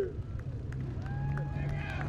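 Faint voices talking in the background over a steady low hum and rumble, with a few light clicks.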